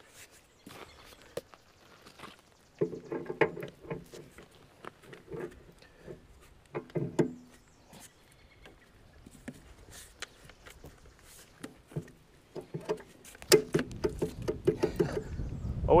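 Metal clinks and knocks of a tractor PTO driveshaft being handled and slid onto a finish mower's gearbox input shaft, ending with the click of the yoke's locking collar seating. A low motor rumble builds near the end.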